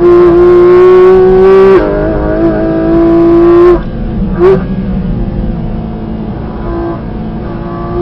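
Porsche 718 Cayman GT4 RS's naturally aspirated 4.0-litre flat-six at full throttle, revs rising through the gear, with an upshift about two seconds in and then climbing again. Near halfway the driver lifts off and the engine drops to a much quieter overrun, with a short blip of revs just after the lift.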